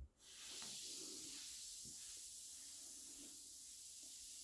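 A Lush Lord of Misrule bath bomb fizzing in bath water, heard as a faint, steady hiss. The hiss starts just after a brief low thump.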